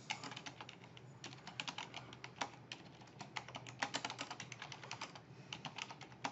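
Typing on a computer keyboard: a steady run of quick key clicks, broken by short pauses about a second in and again near the end.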